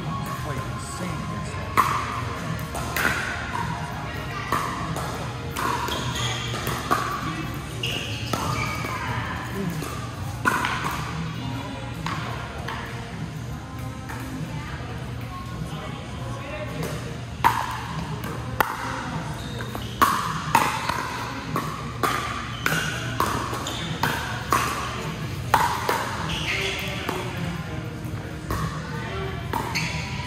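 Pickleball paddles hitting a plastic ball, sharp short pops that come scattered at first and then in a quick run of exchanges in the second half.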